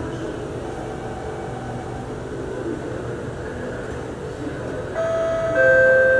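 Steady hum inside a Singapore MRT Circle Line train standing at a platform with its doors open. About five seconds in, the door-closing warning chime starts: a steady electronic tone, joined about half a second later by a second, lower tone as it gets louder, signalling that the doors are about to close.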